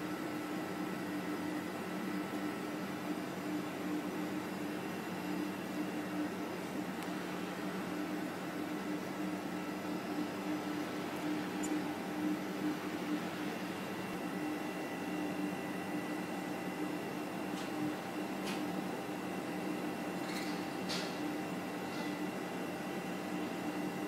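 Steady mechanical hum of a fan or ventilation unit with a few fixed pitches. In the second half it is joined by a few faint light clicks as a metal spatula touches the glass beaker and the plastic syringe.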